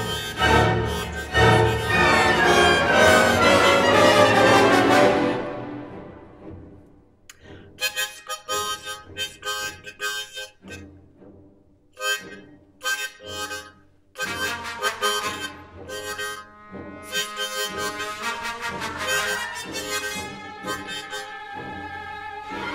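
Harmonica played in place of speech. The first five seconds are loud sustained chords that fade away, followed by short, choppy phrases broken by gaps.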